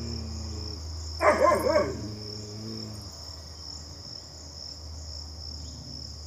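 A dog gives one loud, wavering call lasting under a second, a little over a second in. Behind it, insects chirr steadily and high.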